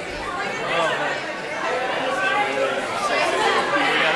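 Chatter of many voices talking at once, with laughter, in a hallway.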